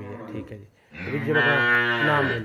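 A crossbreed dairy cow mooing: one long, low call starting about a second in.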